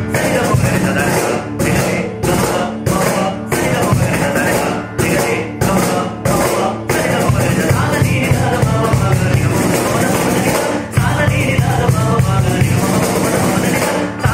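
A man singing a melodic song, backed by a cajon played by hand. In the first half the music comes in short, evenly spaced phrases with brief breaks; about halfway through it turns continuous.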